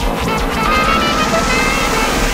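Electronic music in a dubstep style, with a dense, steady synth texture and no break.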